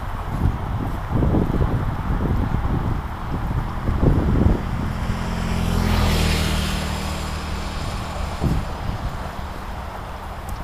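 A road vehicle passes: a low engine hum with tyre hiss that swells to a peak about six seconds in and then fades. Wind buffets the microphone with low thumps during the first few seconds.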